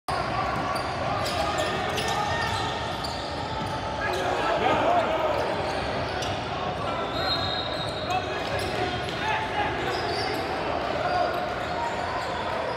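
A basketball being dribbled on a hardwood gym floor, with repeated bounces, over the voices of players and spectators in a large, echoing gym.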